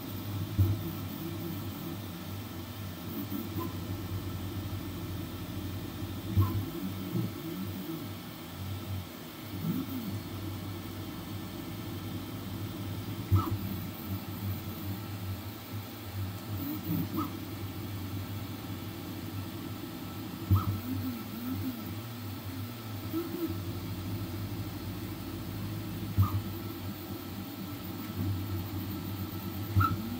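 Flsun V400 delta 3D printer printing: its stepper motors whir in tones that keep gliding up and down as the print head moves, over a steady hum. A sharp click comes every few seconds, about six times in all.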